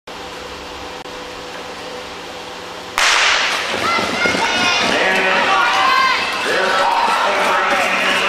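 Quiet arena room tone, then a starting gun cracks about three seconds in and the crowd breaks into cheering and shouting for the start of a short-track speed skating race.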